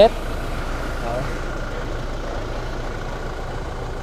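Toyota Fortuner's four-cylinder turbodiesel engine idling steadily.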